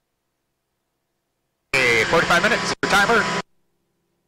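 A short burst of speech, about a second and a half long in two phrases, with dead silence before and after, as on a gated headset or intercom feed.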